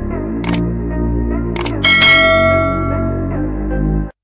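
Subscribe-animation sound effects over a low, sustained music bed: two short mouse clicks, about half a second and a second and a half in, then a louder bell ding at about two seconds that rings out for over a second.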